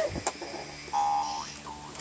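LeapFrog Color Mixer toy truck: a plastic click or two as a button is pressed, then a short electronic beep from the toy's speaker about a second later, followed by a brief second tone.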